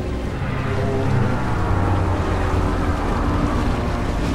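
Film sound effects of a capsized ocean liner going down: a deep, steady rumble with rushing, churning water, and music faintly beneath.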